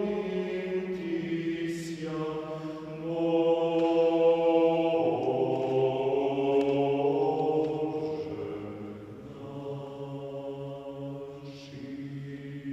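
Slow Orthodox church chant laid in as background music: voices holding long notes that change pitch every few seconds, softer in the second half.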